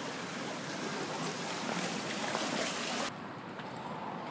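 Running water, a steady rushing hiss that drops away sharply about three seconds in, leaving a quieter, duller background.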